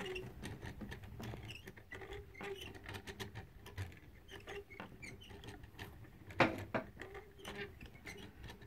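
Small wooden automaton mechanism worked by a hand crank, its bicycle-spoke wire drive shaft turning the cams: light, irregular clicking throughout, with one louder click about six and a half seconds in.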